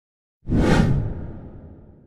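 A whoosh sound effect with a deep boom underneath. It starts suddenly about half a second in and fades out slowly over the next second and a half.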